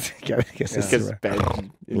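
Men laughing in short, breathy bursts, with a throaty edge.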